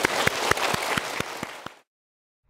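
A hall audience applauding, many hands clapping together, fading and then cutting off abruptly shortly before the end.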